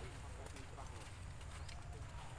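Faint, indistinct voices in the background over a steady low rumble.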